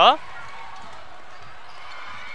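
Steady background noise of a gym during live basketball play, with faint dribbles of the ball on the wooden court.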